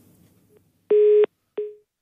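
Telephone busy tone on a phone-in line, the sign that the caller's call has been disconnected. One steady beep about a third of a second long, then after a short gap a second beep that fades out quickly.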